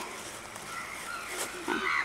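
A few faint, short animal calls, with a louder one near the end.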